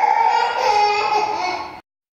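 An infant of twelve to eighteen months crying in one long, high-pitched wail, cut off suddenly near the end. This is the distress crying of a baby left alone in the room, away from its caregiver.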